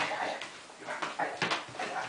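English Pointer puppy whimpering in a quick series of short cries.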